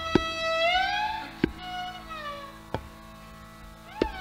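Hindustani classical violin playing a slow phrase of gliding notes, the pitch sliding up about a second in and back down near the middle, with single tabla strokes falling about every second and a half.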